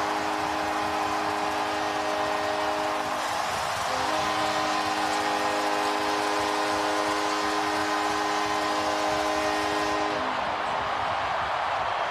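Hockey arena goal horn sounding over a cheering crowd: two long blasts with a short break about three seconds in, the horn stopping about ten seconds in. It signals a home-team goal.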